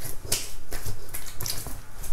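Irregular light clicks and rubbing, about eight in two seconds, from a hand moving over a freshly shaved, damp face.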